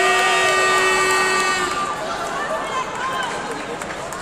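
Several people shouting and calling out over one another, with two long held calls in about the first two seconds, then looser, quieter shouting.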